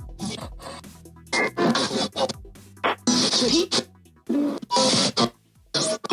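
Spirit Box Lite ghost box app sweeping through radio frequencies, played through a Bluetooth speaker: short, choppy, irregular bursts of static and garbled voice-like radio fragments, over a low hum that fades out about two-thirds of the way in.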